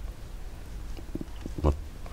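A pause in a man's speech: a steady low hum with a few faint, short mouth sounds about a second in. Near the end he starts speaking again.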